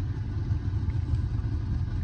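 Steady low rumble of a car, heard from inside its cabin while the car stands still.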